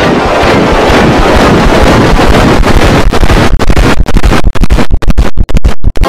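Loud, harsh, heavily distorted audio, a soundtrack mangled by stacked editing effects so that it comes out as a dense, scratchy wash of noise. In the last couple of seconds it keeps cutting out in short, quick gaps, stuttering.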